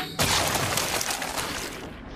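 Cartoon sound effect of a toad being disgorged from a mouth: a dense, crackling rush like something shattering, fading out over just under two seconds.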